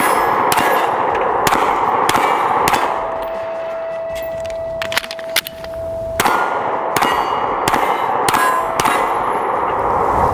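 FN 510 Tactical 10mm pistol fired in strings at steel targets: sharp shots about every half second, each hit clanging off the steel, with a steady metallic ring hanging between them. The shooting slows about three seconds in and picks up again around six seconds.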